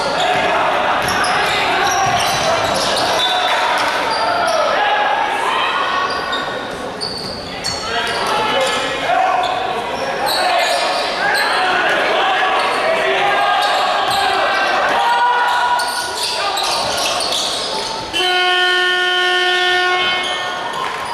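Basketball game sounds echoing in an arena hall: a ball bouncing on the court and players' and spectators' voices. About 18 seconds in, the arena horn sounds one steady tone that holds to the end.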